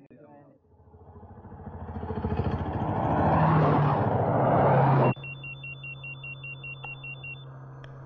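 A motor vehicle's engine approaches, growing steadily louder, then cuts off suddenly. A steady low in-car hum follows, over which a mobile phone rings with a high, rapidly alternating two-tone electronic trill for about two seconds.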